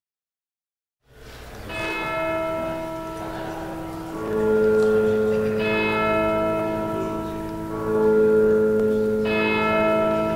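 Silence for about a second, then church bells ring: about five strikes, each one's tone ringing on under the next.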